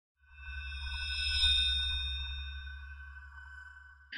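Short synthesized intro sting for a logo animation: a low drone under several held high tones, swelling about a second in and then fading away.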